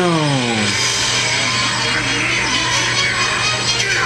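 Anime episode soundtrack: dramatic background music with battle effects. A pitched sound falls in pitch during the first second.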